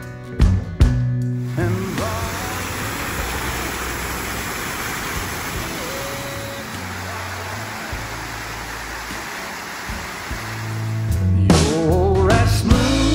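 Fountain jets splashing into a stone basin: a steady rush of falling water, with faint music underneath. Music is loud for the first second or so and comes back loudly near the end.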